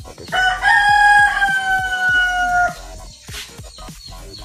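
A rooster crowing once: a loud, long call of a few quick notes that settles into a held note falling slightly in pitch, over background music with a steady beat.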